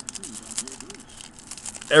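Foil trading-card pack crinkling and crackling as fingers pull open its crimped top, a run of soft irregular crackles.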